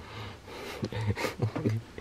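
A man's breathing and short muttered vocal sounds close to a microphone: a breath about a second in and a few brief voiced bits, no full words.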